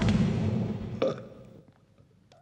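A person belching loudly: one long belch that starts suddenly, then a second, shorter one about a second in that trails off.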